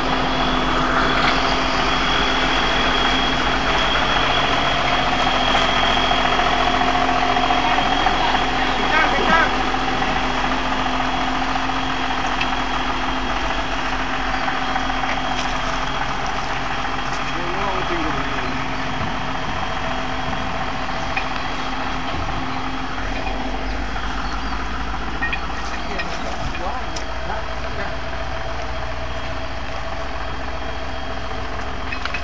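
John Deere 7505 tractor's diesel engine running steadily, with a thin high whine above it, growing slightly quieter through the second half.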